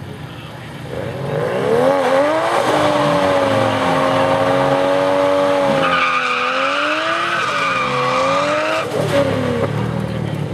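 Car engine revving up and then held at high revs during a drag-strip burnout, with the rear tyres spinning and squealing. The engine note wavers and then drops off about nine seconds in.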